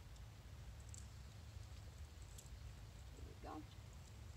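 A few faint clicks of metal leash and collar hardware being handled, over a low steady rumble.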